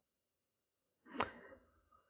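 A single sharp tap of a pen against the paper on the desk, a little over a second in, amid otherwise near silence.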